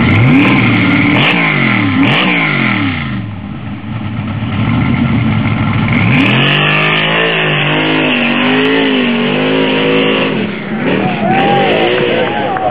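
Lifted pickup truck's engine revving hard, its pitch swinging up and down twice in the first couple of seconds, then after a short lull rising and holding high as the truck launches up the sand hill with its rear tyres spinning in the sand.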